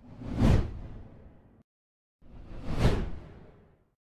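Two whoosh sound effects from a logo animation, each swelling quickly and then fading away: the first about half a second in, the second near three seconds in.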